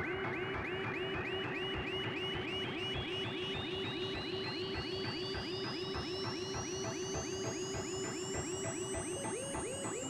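Electronic ambient music from a hardware synthesizer rig (Behringer Neutron, Korg Volca Bass and Korg Monologue sequenced by a Korg SQ-1) with reverb and delay. Fast sequenced blips, several a second and each with a quick bend in pitch, run over a steady pulse, while a high tone slowly rises in pitch and turns to fall near the end.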